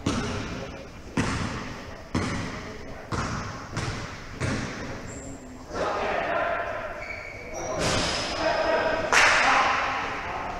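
Basketball dribbled on an indoor court floor, bouncing about once a second with echo in the big hall, then players' shouting voices with a few brief high squeaks, likely sneakers on the floor.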